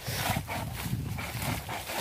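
An animal calling several times in short, irregular calls.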